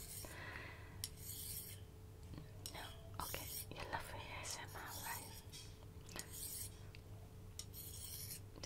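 Soft whispering close to the microphone, broken into short phrases, with faint clicks between them.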